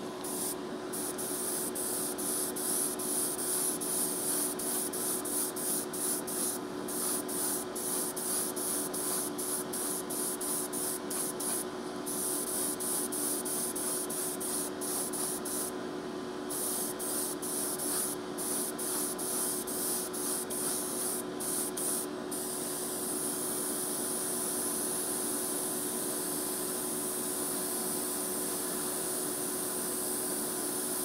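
Airbrush spraying Createx Autoborne primer sealer in light coats: the hiss of air and paint comes in quick short bursts for about the first twenty seconds, then runs continuously. A steady hum sits underneath.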